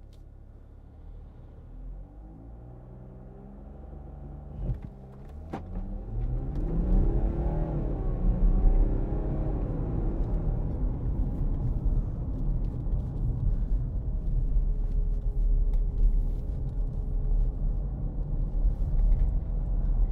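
Heard from inside the cabin, a Porsche Cayenne's three-litre six-cylinder turbodiesel idles quietly, then pulls away and accelerates, its note rising in steps as the automatic gearbox changes up. A couple of sharp clicks come about five seconds in, and the rest is steady engine hum and low road rumble at cruise.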